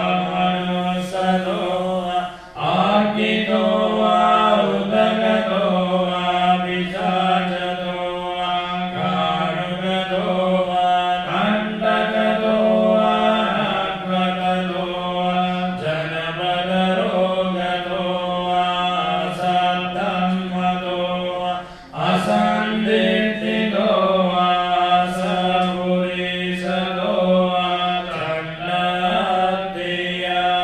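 Theravada Buddhist paritta chanting, recited on a steady, nearly level pitch. It breaks off briefly for breath about two and a half seconds in and again about 22 seconds in.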